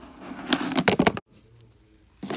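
Small plastic doll-sized cups and bottles clicking and knocking against each other and a plastic tabletop as they are handled. It comes as a quick cluster of clicks about half a second in, lasting half a second.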